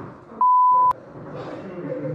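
A censorship bleep: one steady high-pitched tone about half a second long, starting and stopping abruptly and ending with a click, laid over a swear word. Talk from a phone recording in a classroom comes before and after it.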